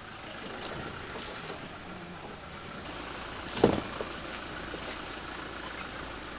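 A car driving along a narrow off-road dirt track: steady low engine and road rumble, with one short bump about two-thirds of the way through.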